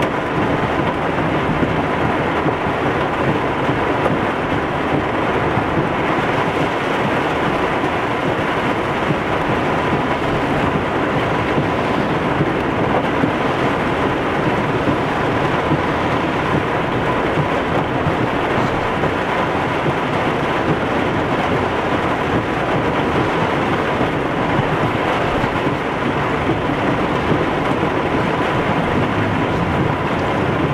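Torrential rain on a car's roof and windshield, heard from inside the cabin, mixed with the wash of tyres through deep floodwater; a dense, steady hiss with no breaks.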